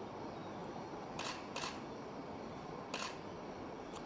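A few faint camera shutter clicks, about a second, a second and a half and three seconds in, over low steady background noise.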